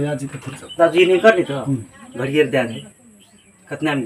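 Men talking in low voices, in several phrases, with a pause about three seconds in.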